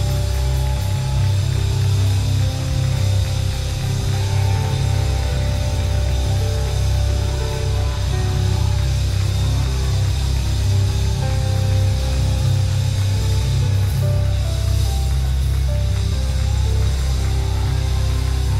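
A live worship band playing instrumental music: slow, held chords over a heavy, steady bass, with no singing.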